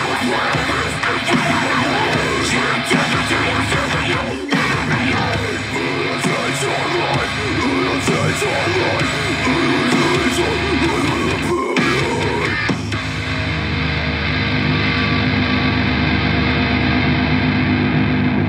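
Heavy rock song with distorted electric guitars and drums, broken by two brief stops; in the last few seconds it settles into held, sustained chords.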